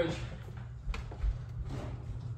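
Soft footsteps and handling noise as a person gets up and walks off across the room: a sharp click about a second in, then a couple of low thumps, over a steady low room hum.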